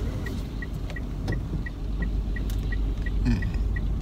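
A car's turn-signal indicator ticking evenly, about three short ticks a second, over the steady low rumble of the car heard from inside the cabin.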